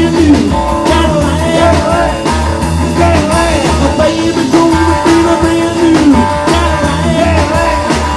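Rockabilly band playing live: a hollow-body electric guitar carries a lead line whose notes bend up and down, over upright bass and a drum kit keeping a steady driving beat.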